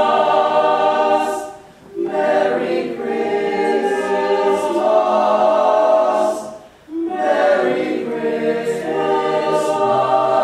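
A cappella barbershop group of teenage boys singing in close harmony, holding sustained chords. The sound drops away briefly twice, about two seconds and seven seconds in, between phrases.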